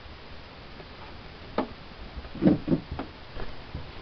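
A Doberman sucking and chewing on a plush stuffed toy, making a string of short wet smacking clicks: one about a second and a half in, then a quick cluster of louder ones a second later.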